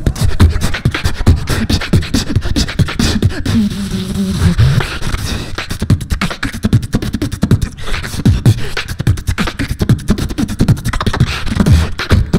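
Human beatboxing into a handheld microphone over a PA: a fast, dense pattern of kick drums, snares and clicks with heavy bass, and a short held hummed tone about four seconds in.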